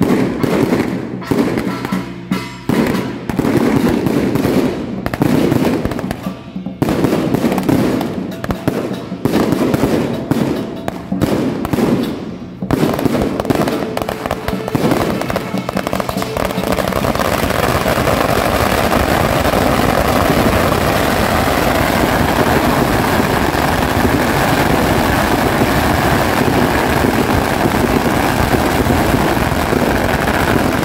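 Temple procession percussion played in rhythmic bursts with short gaps. From about halfway through, it gives way to a long, unbroken crackle of firecracker strings, with hand cymbals clashing along with it.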